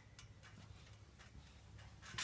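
Near silence: a low steady hum with a few faint, short clicks scattered through it.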